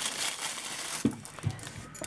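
Thin clear plastic packaging bag crinkling as hands pull it open, the rustle densest in the first second and thinning out after.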